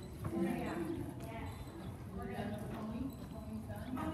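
Indistinct voices talking over the hoofbeats of a horse walking on the dirt footing of a riding arena.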